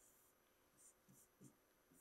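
Near silence: faint room tone with a few soft taps of a pen on an interactive whiteboard as a diagram is drawn and labelled.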